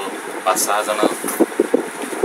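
A man's voice speaking, in short syllables without pause.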